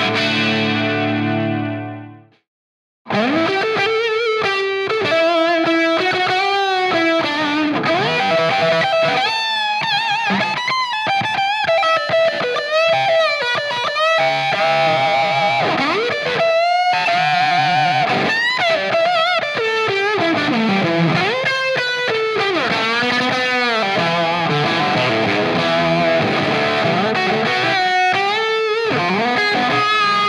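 Electric guitar through a Hiwatt DR103 100-watt valve amp head. A held chord fades out over the first two seconds, and after a brief silence a distorted lead line starts, full of string bends and vibrato. The lead's fuzz comes from a BAE Hot Fuzz, a Superfuzz-style pedal.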